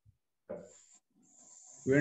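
Speech heard over a video call: a brief voice sound about a quarter of the way in, then a person starts speaking just before the end.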